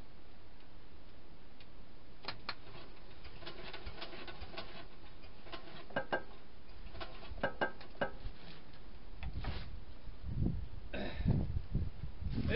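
Scattered light metallic clicks and taps of hand work on an old cast-iron metal lathe, stronger around the middle, followed by a few low thumps in the last two seconds.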